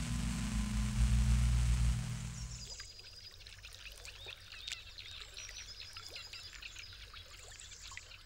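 Water rushing and bubbling over a steady low machine hum, both cutting off suddenly about three seconds in. A quieter stretch follows with many faint, short bird chirps.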